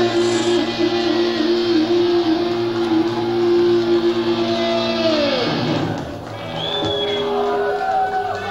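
Live rock band holding a final sustained chord on electric guitar and keyboard, which slides down in pitch and dies away about six seconds in; near the end the crowd starts to shout.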